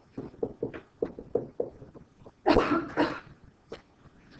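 A pen or stylus taps and scrapes on a writing surface in short strokes, several a second, as handwriting goes on. About two and a half seconds in, a man gives a quick double cough, the loudest sound.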